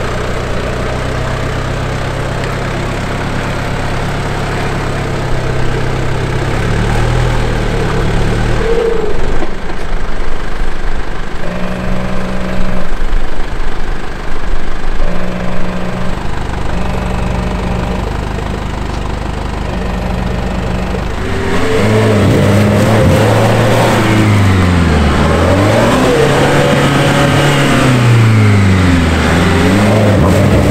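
Nissan Patrol 4x4 engine idling at first, then from about two-thirds of the way in revved up and down again and again as the truck works its wheels through deep bog mud.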